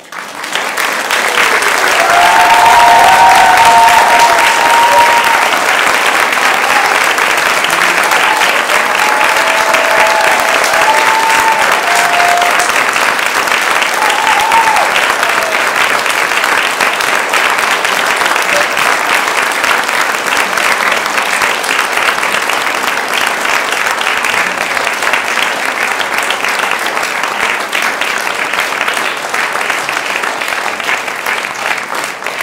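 Audience applauding, starting suddenly at full strength, loudest in the first few seconds and then continuing steadily, with a few short high-pitched calls from the crowd over it in the first half.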